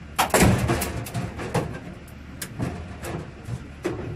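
Metal clanking and scraping as a steel pry bar is worked against a claw machine's steel lid and frame to tear it open. A loud clattering burst comes about a quarter second in, then scattered sharp knocks.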